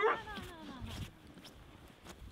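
A dog whimpering briefly at the start, one falling whine, then only faint sounds.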